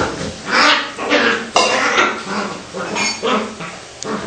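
Australian terrier vocalising in a rapid series of short sounds, about two a second, with a brief high whine about three seconds in.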